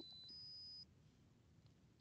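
Near silence with a faint, high-pitched steady tone that stops just under a second in, leaving only faint room noise.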